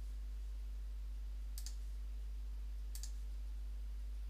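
Two soft computer mouse clicks, about a second and a half apart, over a steady low electrical hum.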